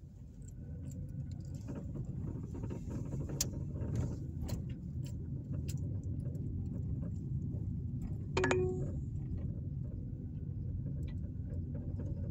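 Car moving slowly, heard from inside the cabin: a steady low road and engine rumble that builds a little over the first few seconds, with scattered light clicks and a brief short tone about eight seconds in.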